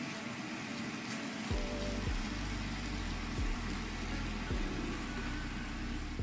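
Tofu slices sizzling as they fry in a pan, a steady hiss. Background music with a bass beat comes in about a second and a half in.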